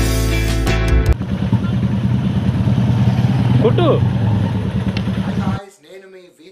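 About a second of strummed guitar music. Then motorcycle engines idle in a steady low rumble, with a voice calling out briefly in the middle. The engine sound cuts off shortly before the end, leaving only quieter voices.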